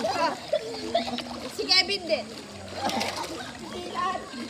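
Pool water splashing as children push and dunk one another, with their laughing voices and one short high-pitched shriek near the middle.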